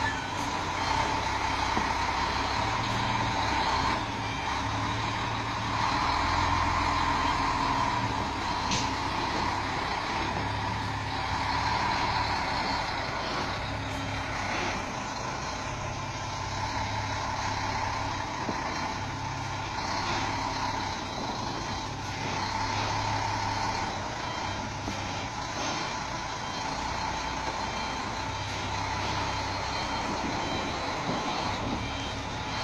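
B-double (superlink) truck reversing, its diesel engine running steadily at low revs, with its reversing alarm sounding repeatedly over the engine.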